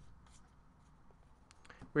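Faint rustle and a few light ticks of a stack of trading cards being slid and flipped through by hand. A man's voice starts right at the end.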